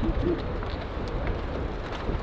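Outdoor background noise with a steady, uneven low rumble, and a faint trailing bit of voice at the very start.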